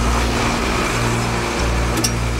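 Armoured military patrol vehicle driving, a steady low engine and road rumble, mixed with background music.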